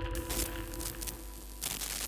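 Tail of a logo intro sound effect: faint crackling, static-like glitch noise over a quiet lingering hum that fades out.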